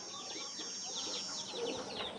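Quiet farmyard sound of free-range chickens clucking softly, among many quick, high chirps from small birds and a steady high insect-like hum.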